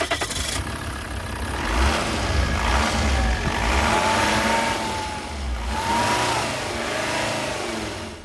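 Volvo S60 D5's five-cylinder turbodiesel engine running just after starting, heard with the bonnet open. It is revved up twice, about two and six seconds in, with a whine that rises and falls with the revs.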